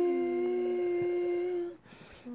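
A worship singer holding one long, steady sung note, the end of a sung line, which stops shortly before the end; a second, lower voice holds a note under it for the first part.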